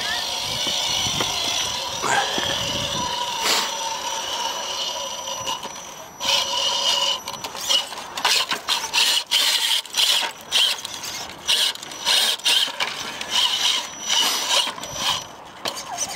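A 2.2-scale RC rock crawler's electric motor and gear train whining as it climbs rocks. The whine holds steady for the first few seconds, then comes in short on-off spurts as the throttle is worked.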